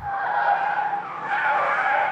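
Car tyres squealing on tarmac as a Volvo test car is driven hard through a turn: a wavering, high-pitched squeal.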